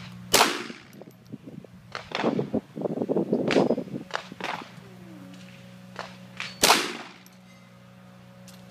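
Two shots from a Ruger 22/45 Mark III .22 LR pistol, the first just after the start and the second about six seconds later. A burst of irregular clattering falls between them.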